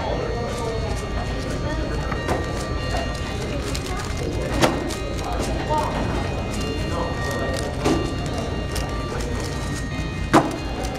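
Quick, irregular plastic clicking of a 3x3 speedcube being turned during a solve, with sharper clacks about halfway through and again near the end. Background voices and a steady hum run underneath.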